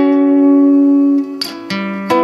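Acoustic guitar played fingerstyle: a plucked chord at the start rings on for about a second, then fresh notes are plucked near the end.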